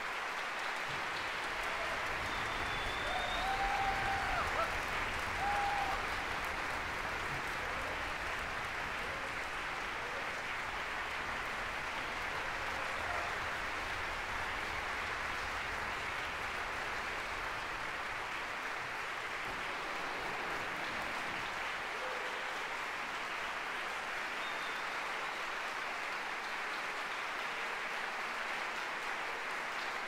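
Concert hall audience applauding steadily at the end of a performance.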